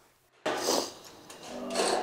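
Silence for about half a second, then a sudden rustling scrape. Music fades in near the end.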